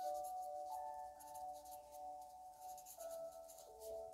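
Felt-tip marker writing on paper, a series of short scratchy strokes, over soft ambient music of held, slowly shifting tones.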